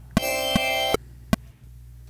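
A short chopped clip of a Church Bell Pad synth playing a C chord, played back once from the beat-making session and cut off after under a second. A sharp click comes about half a second after it ends.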